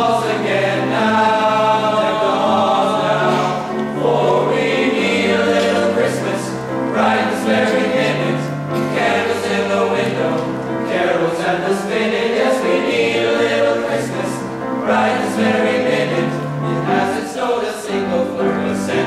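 A men's choir of high-school voices singing in harmony with piano accompaniment, in sustained phrases over steady low notes.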